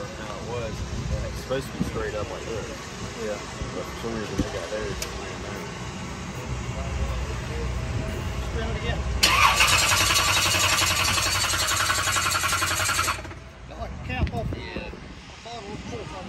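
Low engine rumble with faint voices; about nine seconds in, a loud, harsh mechanical noise starts abruptly, runs for about four seconds and cuts off suddenly.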